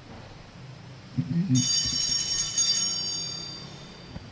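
A small metal altar bell struck once about a second and a half in, its high ringing fading away over about two seconds.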